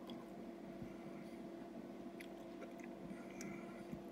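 Faint chewing of a smoked meat stick: a few soft, scattered mouth clicks over a steady low hum.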